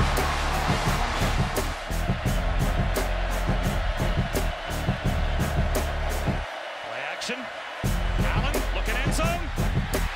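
Hype music track with a steady, heavy beat. The bass and beat drop out for about a second past the middle, then come back in.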